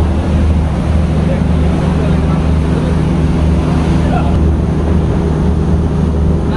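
A passenger launch's engines hum steadily and low, under a loud, even rush of storm wind and spray against the vessel.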